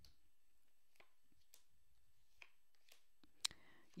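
Tarot cards being laid down on a hard tabletop: a few faint taps, with one sharper click about three and a half seconds in, over near silence.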